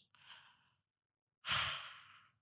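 A faint breath, then about one and a half seconds in a louder sigh exhaled close to a microphone, fading over about half a second.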